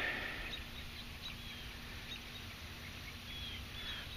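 Quiet outdoor ambience with faint, brief high bird chirps scattered through it, over a low steady hum.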